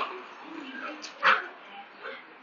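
Dogs play-fighting: a short vocal burst at the start, then one loud, sharp bark a little over a second in, with softer growly sounds between. It is play, not a real fight.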